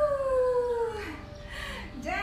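A rooster crowing, ending in one long note that falls in pitch over about a second.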